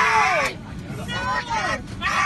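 Raised, high-pitched human voices shouting and crying out, loudest in the first half second and again in the second half, over the steady low hum of an airliner cabin.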